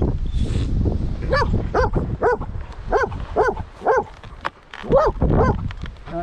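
German Shepherd dog giving a series of about eight short, high yelping whines, roughly two a second, eager to go, with wind rumbling on the microphone.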